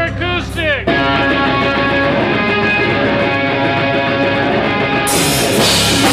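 Live rock band playing loud distorted electric guitars and bass through amplifiers. Guitar notes bending up and down in the first second, then the band comes in about a second in with a sustained distorted chord, and drums with cymbals join near the end.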